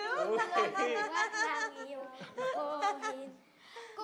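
Several people talking and laughing over one another, with a brief lull near the end.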